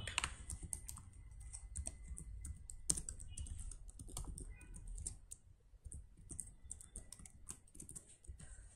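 Typing on a computer keyboard: irregular, light keystrokes, one louder click about three seconds in.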